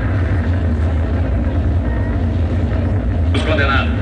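A loud, steady deep rumble, with a voice heard briefly near the end.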